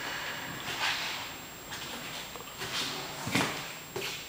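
Footsteps on a hard floor with rustling: a few short scuffs, the clearest about a second in, and a dull thump a little before the end.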